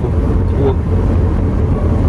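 Steady low rumble of road and engine noise inside a car cruising at highway speed.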